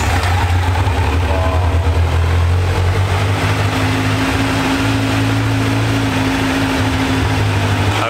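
Kawasaki Z900 demo bike's inline-four engine on its stock exhaust, running steadily at idle. A slightly higher hum joins in from about three seconds in until about seven seconds.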